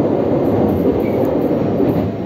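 Steady low rumble of the Sunrise Izumo sleeper train, a 285-series electric train, running under way, heard from inside a passenger car.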